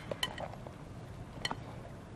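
Two light clinks of a utensil against a mixing bowl, about a second apart, as bread cubes are tossed gently in a pineapple and butter mixture.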